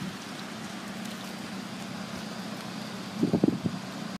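Outdoor ambience in light rain: an even hiss with a steady low hum underneath, and a short cluster of louder low knocks a little after three seconds in.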